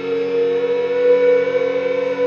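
Ondes Martenot holding a tone that glides slowly upward in pitch, like a siren, over the steady layered drone of a drone vielle (vielle à bourdons).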